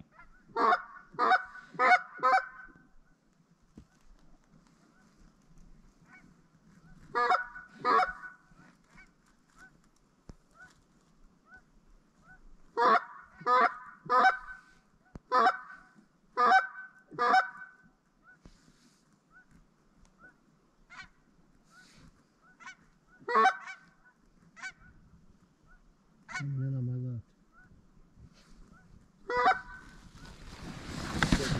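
Lesser Canada geese honking in short, loud bursts: a quick run of four honks, a pair, a run of about six, then single honks, with fainter honks in between.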